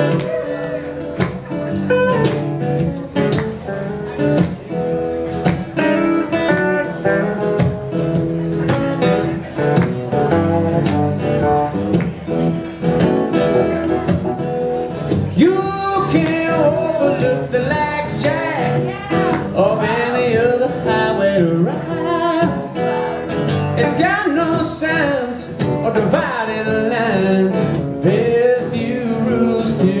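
Acoustic guitar and red semi-hollow electric guitar playing an instrumental passage live, the lead lines bending up and down in pitch through the second half; a voice comes back in right at the end.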